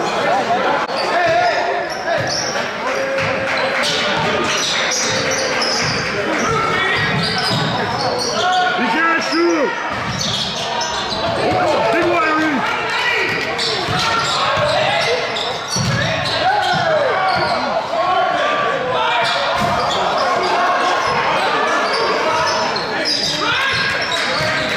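A basketball dribbled and bouncing on a hardwood gym floor during play, with indistinct voices of people in the gym throughout, all echoing in a large hall.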